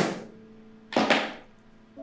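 Two loud knocks on a door, about a second apart, each ringing briefly, over faint background music.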